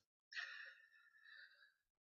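Near silence, broken by a faint, short breath from the man on the call about half a second in.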